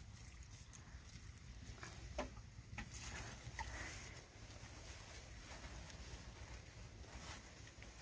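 A quiet stretch with a few faint scrapes and taps of a hand hoe working soil, over a low steady rumble.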